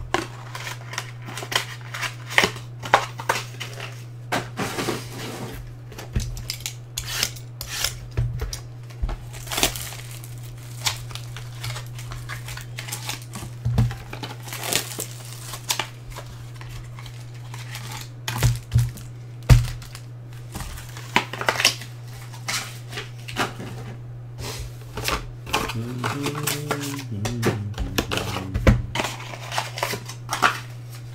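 Trading cards and card boxes being handled on a table: a run of irregular clicks, taps and rustles as cards are sorted and boxes moved, over a steady low hum.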